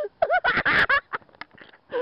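People laughing and calling out excitedly, loudest in the first second.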